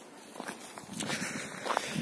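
Faint footsteps, a few soft scuffs.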